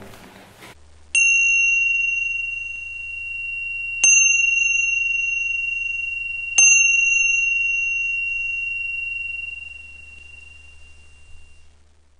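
A small high-pitched bell struck three times, a few seconds apart. Each strike rings with a clear, pure tone that fades slowly under the next.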